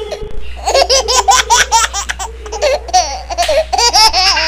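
A girl laughing in quick bursts of high-pitched giggles, starting about half a second in.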